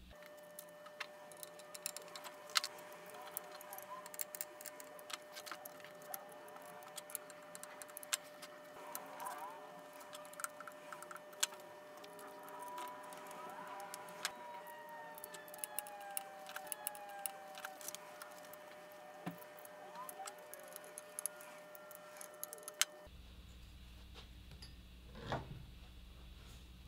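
Faint, scattered light metallic clicks and clinks of a hex key, bolts and arm parts as motor arms are bolted onto a DJI S1000 octocopter frame, over a faint steady tone. The clicking cuts off abruptly near the end, leaving room tone.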